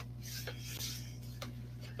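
Faint rustling and rubbing of a mailed package box being opened and its contents handled, loudest in the first second, with a few light clicks, over a steady electrical hum.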